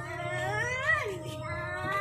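A meow-like animal call: one long cry that rises and then falls in pitch, and a shorter one starting near the end.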